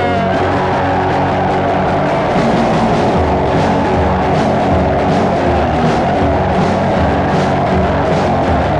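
Lo-fi, DIY indie punk-rock song playing, with guitar over a steady beat.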